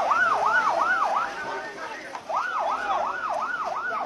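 Ambulance siren yelping, its pitch rising and falling about three times a second; it cuts out for about a second in the middle and then starts again.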